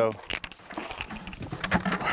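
Keys jangling with a run of small clicks and knocks as a person climbs into a car's driver's seat.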